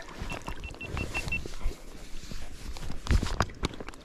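Lake water sloshing and splashing around a landing net as hands handle a trout in the shallows, with a few sharper splashes and knocks about three seconds in as the net is lifted.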